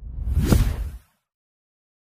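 Whoosh sound effect with a deep low boom, swelling to a peak about half a second in and cutting off after about a second, accompanying an animated YouTube logo outro.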